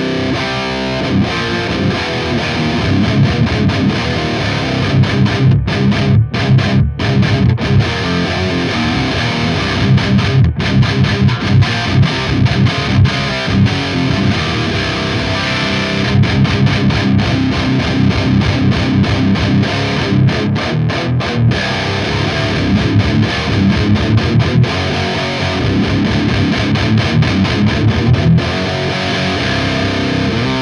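Distorted electric guitar riffing through the KSR Ceres three-channel preamp pedal on its lead channel, with a few brief stops between phrases.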